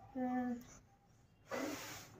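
A young child's voice: one short sung-out vocal sound, then about a second later a breathy hiss lasting half a second.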